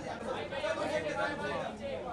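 Indistinct chatter of several people talking at once, no words clear.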